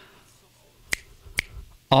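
Two finger snaps about half a second apart, sharp and short, in a pause between spoken words.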